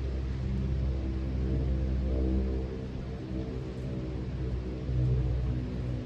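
Steady low drone made of several held tones, dropping a little in level and shifting pitch about halfway through.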